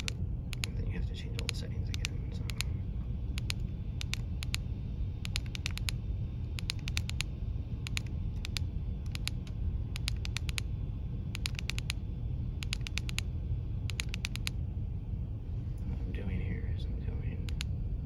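Keypad buttons of a Baofeng UV-5R handheld radio clicked in quick runs of two to four presses, again and again, as memory channels are stepped through and deleted one by one. A steady low rumble runs underneath.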